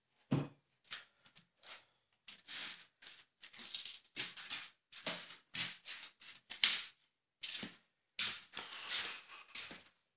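Short rustling and scuffing noises from a person moving about and handling gear, one to two a second, with a heavier thump about a third of a second in.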